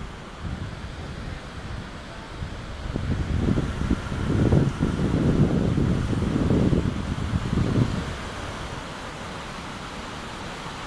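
Wind buffeting the microphone in irregular low rumbling gusts, loudest from about three to eight seconds in, over a steady background hiss.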